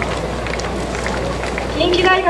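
Open-air stadium ambience: an even wash of crowd and outdoor noise with a few faint taps. A voice over the public-address system begins right at the end.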